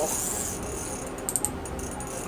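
Ice fishing reel giving a short run of sharp clicks a little past halfway, with a hooked burbot pulling on the line. A low steady hum runs underneath.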